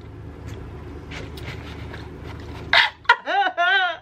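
Low steady room hum, then near the end a short breathy rustle followed by two brief wavering whimpers from a nervous woman, vocal sounds rather than words.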